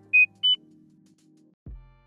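Title-card sound effects: a quick run of short electronic beeps, each one higher than the last, in the first half second, then a soft low thud near the end.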